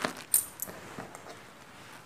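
A few light metallic clicks of coins clinking together as they are gathered up from a tabletop into the hand, the loudest about a third of a second in.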